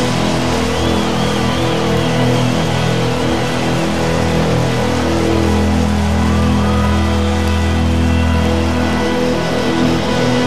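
A rock band playing live, loud and full, in a stretch without singing, held up by long sustained low notes.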